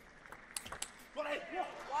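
Table tennis ball striking bats and bouncing on the table: a few sharp clicks in quick succession in the first second, as the rally ends.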